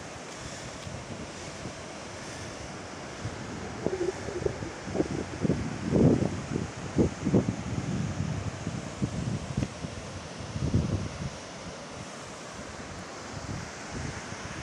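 Wind buffeting a phone microphone over a steady hiss, with a run of gusts in the middle.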